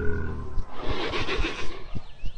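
A low, steady music drone that stops about half a second in, followed by a rough, noisy wild-animal call lasting about a second, with a short rising cry near the end.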